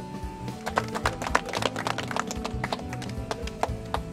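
A small group of people applauding, a scatter of irregular hand claps.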